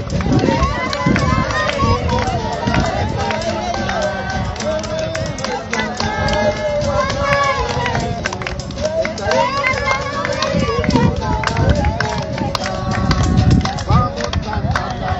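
Indistinct voices of a group of people outdoors, overlapping so that no words stand out, over a low, uneven rumble.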